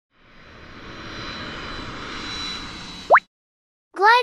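Aircraft sound effect: an engine-like noise with a thin steady whine that swells up and fades over about three seconds. It ends in a quick rising swoosh, the loudest moment.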